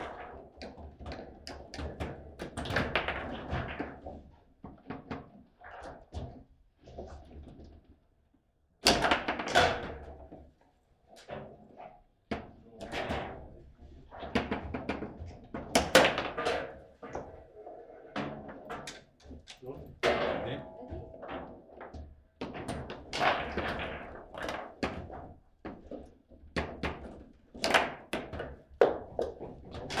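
Foosball table in play: a rapid, irregular run of sharp clacks and thuds as the ball is struck by the plastic figures and bounces off the table walls, with rods knocking against their stops. There is a brief pause about eight seconds in.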